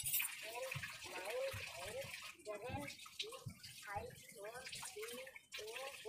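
A person's voice repeating short sung syllables, "na na na", about two a second, over a steady hiss.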